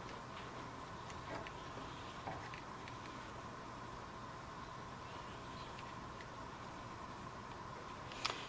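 Faint steady hiss of a long-reach butane lighter burning while a nail held in locking pliers heats in its flame, with a few light ticks.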